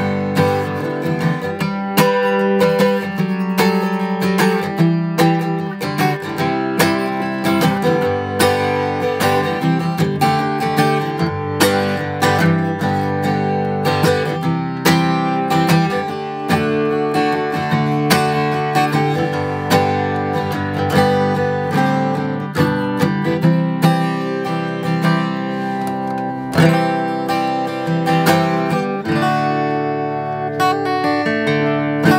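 2018 Martin D-41 rosewood dreadnought acoustic guitar strummed hard with a pick in a continuous run of chords, the strokes coming quickly and the strings ringing between them.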